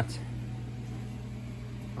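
Steady low mechanical hum of a garage's room tone, with nothing else happening.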